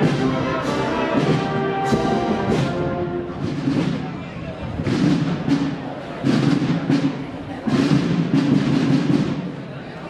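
A Spanish wind band playing a slow processional march, with brass and woodwinds over drum strokes. Sustained brass chords open the passage, then low brass notes swell in short phrases during the second half.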